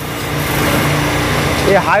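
TVS Apache RTR single-cylinder engine running steadily at a raised idle of about 4,000 rpm while the carburettor air screw is turned to find the point of highest rpm for the mixture setting.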